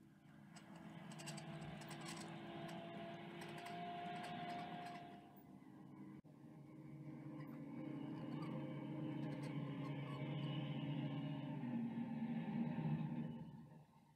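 Steady vehicle engine drone for a toy vehicle driving along, in two long stretches broken by a short dip and a click about six seconds in.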